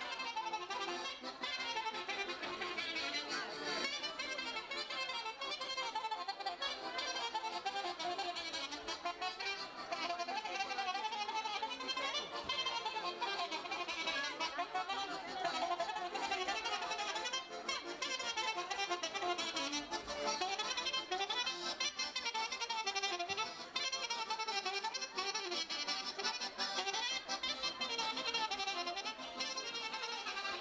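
Traditional folk dance music with a fiddle leading the melody, playing continuously at a lively, steady level.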